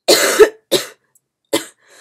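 A woman coughing into her fist, three coughs: the first longest and loudest, the next two shorter and weaker.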